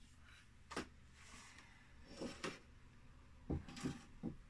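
A handful of light knocks and clunks as items are set down and moved about on a small wooden side table, spread unevenly through the few seconds, with two close together near the end.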